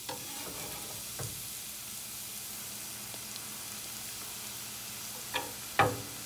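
Chopped green onions sizzling in hot oil in a nonstick pan, a steady hiss. Near the end, two sharp knocks of a spatula against the pan.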